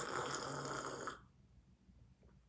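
A man's long, noisy breath with a low hum of voice in it, stopping a little over a second in.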